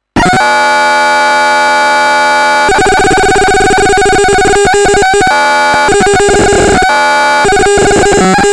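Loud harsh electronic noise from a knob-controlled noise box run through a Yamaha FX500 effects unit. It cuts in abruptly as a dense wall of held, buzzing tones, then shifts pitch and turns choppy and stuttering about three seconds in as the knobs are turned.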